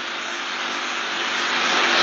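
Steady rushing hiss of background noise on an old interview recording, with no voice over it, growing a little louder near the end.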